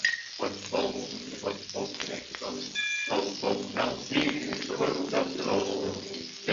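Glee club singing on an old Decca 78 rpm record, the voices shifting in short phrases, with the record's surface clicks running through and a brief whistle-like tone about halfway.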